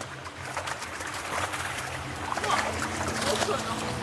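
Water splashing and running in an outdoor grouper-farm pond, with scattered clicks and knocks from handling fish in plastic crates.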